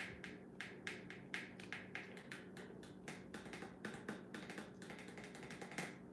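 A run of light, sharp taps and clicks, a few a second and coming faster near the end, over a faint steady hum.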